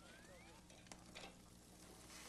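Near silence: a faint outdoor background with one faint rising chirp early on and a single small click about a second in.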